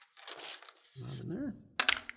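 A cloth polishing bag rustling as it is gathered up with a tray's worth of loose bullets inside, followed by a short wordless voice sound and a couple of sharp clicks near the end.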